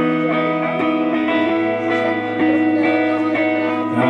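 Instrumental passage of a live song led by a hollow-body electric guitar, played with ringing, sustained chords over a held low bass note that steps down in pitch about a second and a half in.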